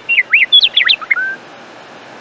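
Birdsong: one phrase of quick whistled chirps sweeping up and down, ending a little past halfway, over a faint hiss.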